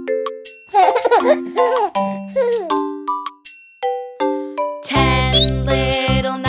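Short chiming jingle of bell-like notes with a baby giggling twice over it; about five seconds in, a children's song intro with bass and a steady beat starts.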